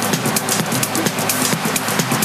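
Electronic house music played through a club sound system, with a fast, steady hi-hat pattern over a sustained bass line.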